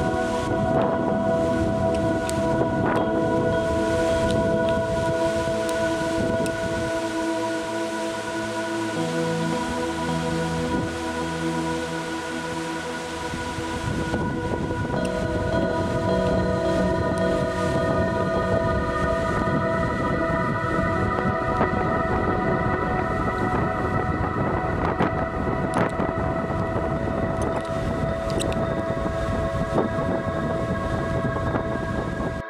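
Background music of long held chords that change a couple of times, over a steady rushing noise.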